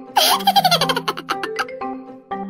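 A baby's giggle, a quick run of laughing pulses that falls in pitch, starting just after the start and lasting about a second and a half. Under it runs light looping marimba-style background music.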